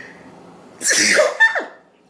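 A woman sneezes once into her hand, a single sudden burst a little under a second in that fades quickly.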